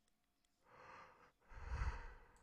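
A person breathing close to a microphone: a soft breath about half a second in, then a louder, longer breath with a low puff near the end.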